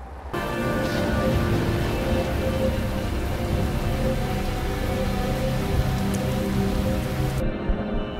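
Heavy rain pouring down, a dense steady hiss that starts suddenly just after the start and cuts off abruptly shortly before the end, over sustained background music.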